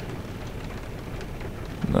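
Steady rain ambience, an even hiss with a low rumble underneath.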